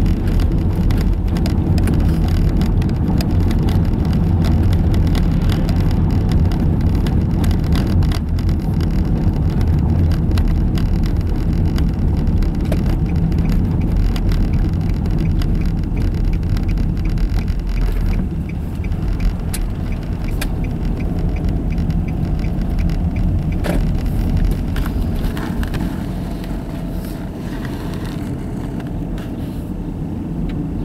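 Car driving on a town street, heard from inside the cabin: a steady low rumble of tyres and engine with many small rattles and knocks, easing a little in the last third.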